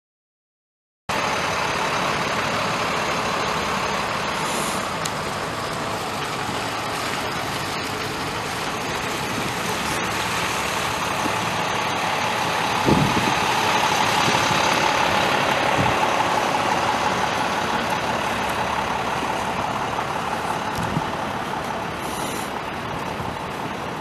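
The 6.0-litre V8 turbo diesel of a 2004 Ford F550 Super Duty bucket truck running steadily at idle, with a single short knock about halfway through.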